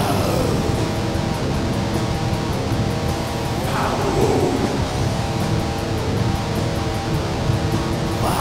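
Death metal played by a band: filthy distorted guitars, heavy bass and relentless drums. A roared vocal comes in about halfway through.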